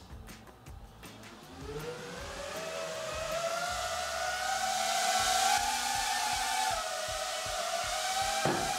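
Small FPV quadcopter drone in flight, its propellers' whine rising in pitch from about two seconds in and then holding high, growing steadily louder.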